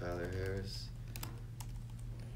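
A few scattered keystrokes typed on a laptop keyboard, after a brief bit of voice at the start, over a steady low hum.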